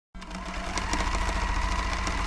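Sewing machine stitching, a sound effect for a logo stitched into denim. It fades in at the start, then runs steadily with a rapid clatter over a faint hum.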